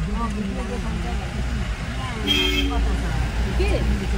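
Car engine and road rumble heard inside the cabin while driving slowly, with a short horn toot a little over two seconds in.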